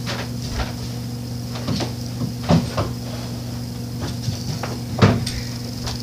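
Scattered knocks and clicks of someone rummaging off camera, a cupboard or drawer plausibly among them, with the clearest knock about five seconds in, over a steady low hum.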